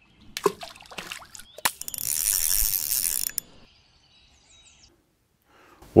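Sound effects of an animated intro: a few sharp clicks, then a loud hissing whir of about a second starting about two seconds in, followed by faint high thin chirps.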